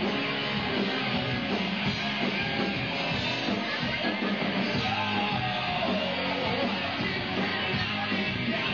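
Live hard rock band playing loudly, with electric guitar and a steady drum beat; a note slides down in pitch about five seconds in.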